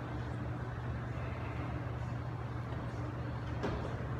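Steady low fan hum with an even rush of moving air, and a single short click near the end.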